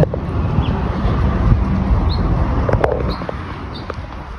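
Outdoor urban background: a steady low rumble with a few faint clicks and brief high chirps, easing off toward the end.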